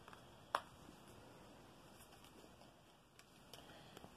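Near silence: faint handling of tarot cards, with one short click about half a second in.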